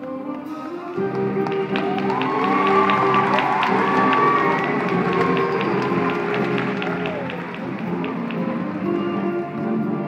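High school jazz band playing a tango, with audience cheering, whooping and clapping over it from about a second and a half in, dying down by about seven seconds.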